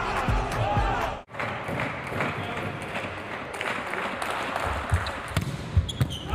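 Court sound of an indoor volleyball match: hall ambience with a voice in the first second, a brief dropout about a second in, then a few sharp ball strikes near the end.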